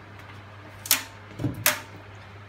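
Handling knocks from a dismantled snow machine's metal housing and end plate: a sharp click about a second in, a duller knock, then another sharp click, over a steady low hum.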